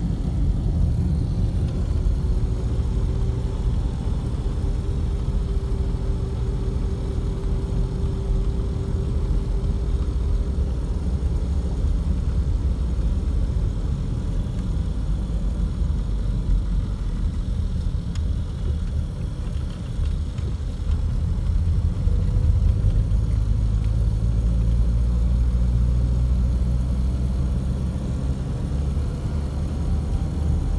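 A moving car's engine and road noise heard from inside the cabin: a continuous low rumble with a faint steady hum over it for the first ten seconds or so. The rumble grows louder a little past two-thirds of the way through.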